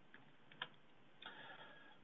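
Near silence: quiet room tone with one faint click a little over half a second in, and a faint soft noise later.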